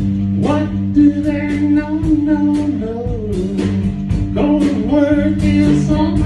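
A small live band of electric guitars playing through an amplifier, strumming chords, with a singer's voice over them.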